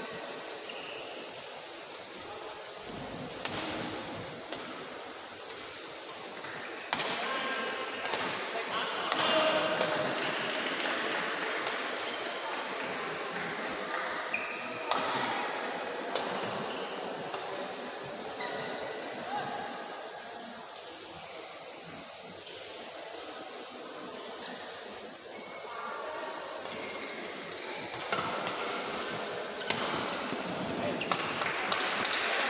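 Badminton rackets striking the shuttlecock: scattered sharp hits ringing in a large sports hall, several close together about a third of the way in and again near the end, over indistinct voices and the hall's steady background.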